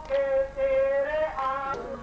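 Devotional singing: a high voice holding long notes and gliding between pitches.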